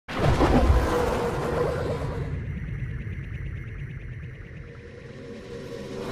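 Cinematic logo-intro sting: a sudden loud hit at the start with a deep rumble and ringing tones that fade slowly over several seconds, then a whoosh swelling near the end.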